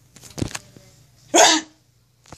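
A small child's single short, sharp vocal burst, loud and breathy, about one and a half seconds in, after a few soft knocks.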